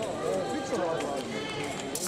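Indistinct voices in a large hall, with fencers' quick footwork on the piste and a sharp click near the end.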